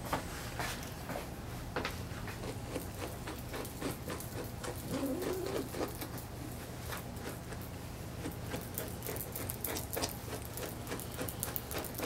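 Grooming brush strokes scratching through a poodle's curly coat, a run of short brushing scrapes that come faster in the second half, over a steady low hum.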